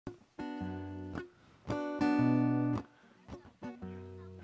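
Acoustic guitar playing the opening chords of a song's introduction: a few chords struck and left to ring, with short pauses between them, the loudest near the middle.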